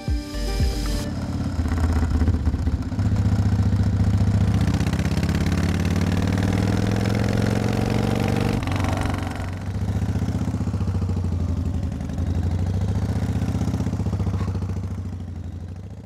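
Motorcycle engines running as the bikes ride along: the engine note climbs steadily as one accelerates, breaks off abruptly about halfway through, and a steady engine sound carries on and fades out at the very end.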